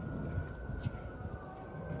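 Faint siren with one high tone slowly falling in pitch, over a low, steady outdoor rumble.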